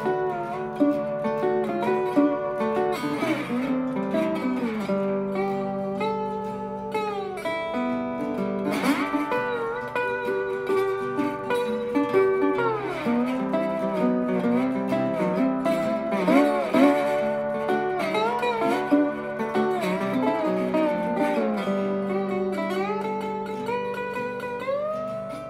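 Metal-bodied resonator guitar played with a slide, its melody notes gliding up and down, over an archtop guitar playing rhythm underneath.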